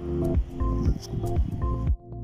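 Background music with held notes over low, repeated drum hits.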